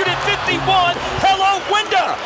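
Speech: a male television commentator talking over the game broadcast.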